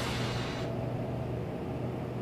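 Steady outdoor background noise with a low hum underneath, and a hiss that fades out within the first second.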